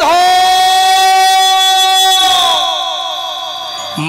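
A male kirtan singer's long, high sung call, held steady for about two seconds, then sliding down in pitch and fading away.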